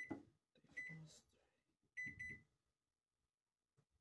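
Microwave oven keypad beeping as its buttons are pressed to set a defrost: one beep at the start, another just under a second in, then three quick beeps about two seconds in.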